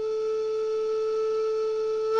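Background music: a single long note from a flute-like wind instrument, held steady at the close of a short falling melody.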